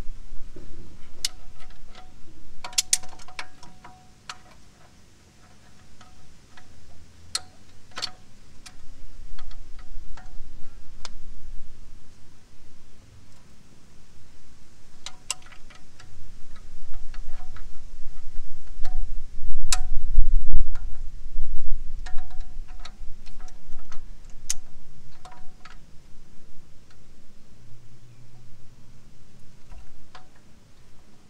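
Vice grips and a spanner clinking on a steel brake-hose fitting as it is tightened by hand: scattered light metallic clicks and ticks, some with a short ring. A low rumble rises about two-thirds of the way in.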